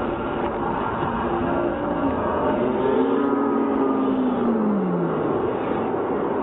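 Steady din of a large arena crowd heard through a camcorder microphone, with a drawn-out pitched sound sliding down in pitch about four to five seconds in.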